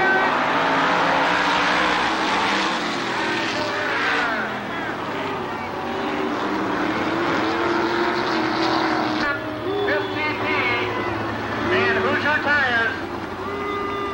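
Sprint car V8 engines racing around a dirt oval. From about nine seconds in, a public-address announcer's voice talks over them.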